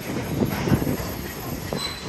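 City bus running, engine and road noise heard from aboard the open-sided bus, with a faint high squeal near the end.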